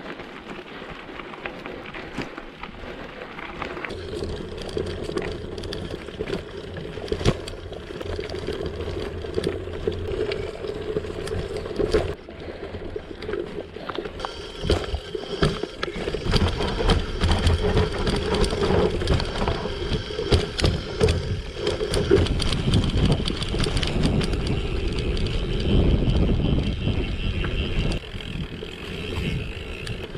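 Gravel bike being ridden over loose gravel and dirt: steady tyre noise with rattles and knocks from the bike, and wind on the handlebar-mounted camera's microphone. About halfway through, on rough woodland singletrack, the knocks and rumble grow louder and more frequent.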